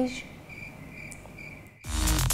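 Cricket chirping in evenly spaced high chirps, the stock sound effect for an awkward silence. Near the end, electronic music with a heavy beat cuts in abruptly and is the loudest sound.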